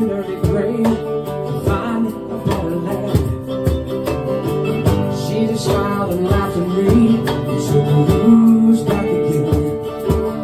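Instrumental break of a live acoustic band: mandolin and acoustic guitar over a steady cajon beat, with a harmonica joining in.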